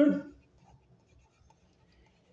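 A man's voice trailing off at the very start. Then near silence with faint taps of a stylus on a tablet screen as a word is written.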